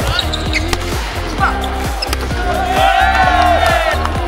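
Background music over volleyball practice: balls being struck and bouncing, and sneakers squeaking on the court floor, with a cluster of squeaks near the end.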